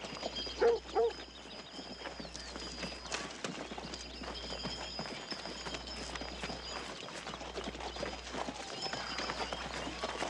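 Horses walking, many hooves clip-clopping on dry ground. About a second in come two short, loud calls.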